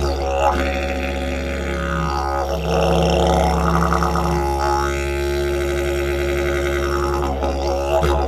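Cottonwood didgeridoo pitched in C#, starting up abruptly and playing a steady low drone, its upper overtones sweeping up and down twice as the tone is shaped.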